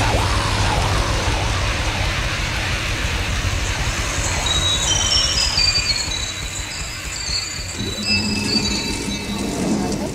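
Death metal instrumental passage: distorted guitars, bass and drums in a dense, driving wall of sound. About halfway through, a high lead line steps downward in pitch, and near the end a new lower pitched part comes in.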